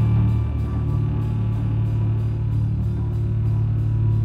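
Live rock band playing: electric guitar and bass hold low sustained notes under a drum kit. The cymbals keep a steady pattern of about four strokes a second.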